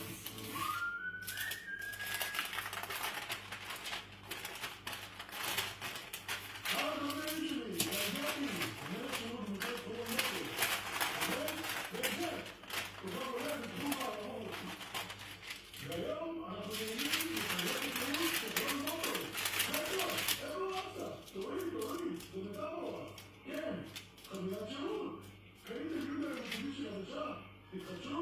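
Baking paper rustling and crinkling with light clicks as hands smooth it and roll dough on it, loudest in two long spells in the middle, with quiet voices talking in the background.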